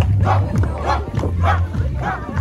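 A group of dancers chanting in short, rhythmic shouts, about two or three a second, over crowd noise.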